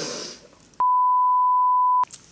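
A single steady 1 kHz censor bleep edited into the soundtrack. It starts a little under a second in and lasts just over a second, with all other sound muted beneath it. It follows a brief burst of breathy noise.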